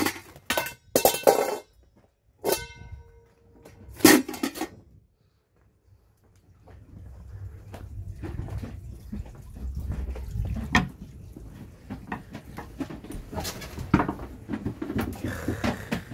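Metal pots and bowls clattering as they are picked up and moved, one ringing briefly about two and a half seconds in. After a short gap comes a spell of shuffling and handling noise with scattered knocks.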